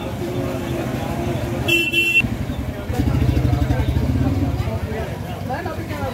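Busy street ambience: crowd voices, with a vehicle horn tooting briefly about two seconds in and a vehicle engine running close by from about three seconds in.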